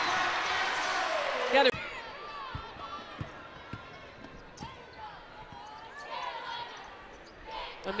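Arena crowd cheering loudly for about a second and a half, cut off abruptly, then a basketball dribbled on a hardwood court, a handful of separate bounces under quieter crowd noise.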